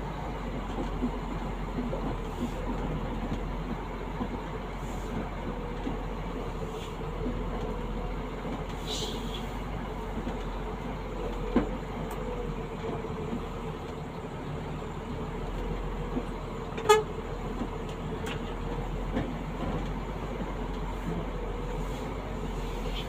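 Vehicle engine and road noise heard from inside the cab while driving slowly, with a faint steady whine. There are two brief sharp sounds, one about halfway through and a louder one about 17 seconds in.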